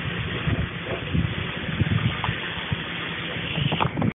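Jeep Cherokee XJ engine running as the lifted 4x4 crawls over creek-bed rock ledges, its low note swelling and dipping unevenly.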